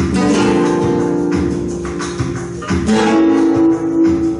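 Two guitars strumming chords together in a flamenco tangos rhythm, a simple strumming pattern, changing chord about a second in and again near the end.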